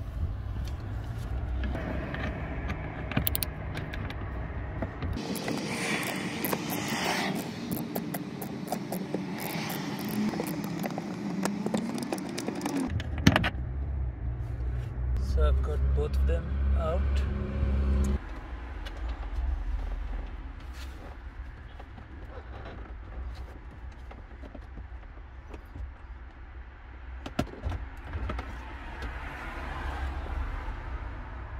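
Indistinct voices mixed with small clicks and rattles of hand work on a car's dashboard: nuts and screws being undone and plastic trim panels handled and pulled free.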